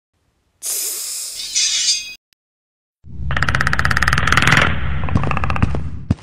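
Added sound effects: a hiss lasting about a second and a half, then, after a second's gap, about three seconds of fast rattling clicks over a low rumble, a creature's clicking growl.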